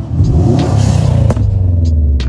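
Modified Subaru WRX with a turbocharged flat-four and an Invidia N1 dual catback exhaust accelerating past at close range. The loud exhaust rumble rises in pitch and then falls away as the car goes by.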